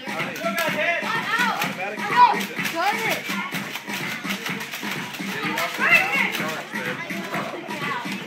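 Children shouting and calling out as they play, over background music with a steady beat.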